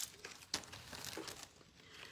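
Faint rustling and crinkling of things being handled, with a sharp click about half a second in.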